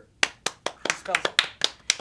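Hands clapping, a quick run of about ten claps at roughly five a second.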